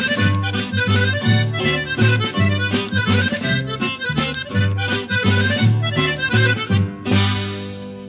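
Norteño redova played out instrumentally on button accordion over strummed strings and bass in a steady dance rhythm. It ends on a final chord a little after seven seconds that rings on and fades.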